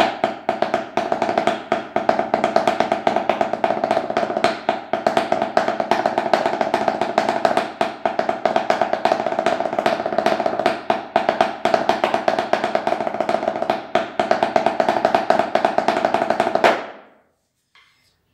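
Wooden drumsticks playing a fast 3/4 ranchero rhythm on a towel-muffled tarola (banda snare drum), dense strokes over a steady drum ring, stopping abruptly near the end.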